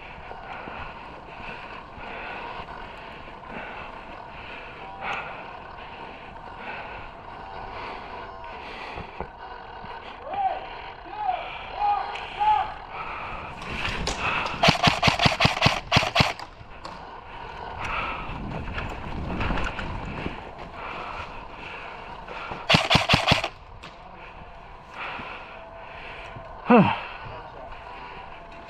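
Airsoft rifle firing on full auto: a rapid burst of about a dozen shots lasting about two seconds, about 14 seconds in, then a shorter burst of about five shots about 23 seconds in.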